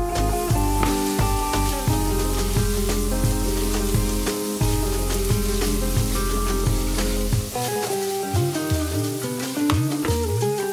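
Diced potatoes sizzling as they fry in hot oil in a non-stick frying pan, the pan shaken to toss them. The sizzle starts suddenly and runs steadily.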